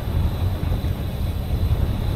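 Wind buffeting the microphone of a handlebar-mounted camera on a moving bicycle, a low, uneven rumble mixed with tyre noise from the road surface.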